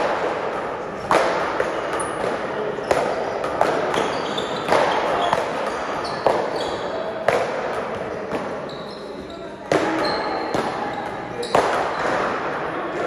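Paddleball doubles rally: the ball struck by solid paddles and rebounding off the front wall, about seven sharp hits a second or two apart, echoing in the large hall.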